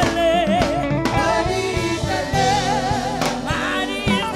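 Live gospel worship music: a woman sings lead into a microphone, holding notes with vibrato, over a band with drum kit, keyboard and bass guitar.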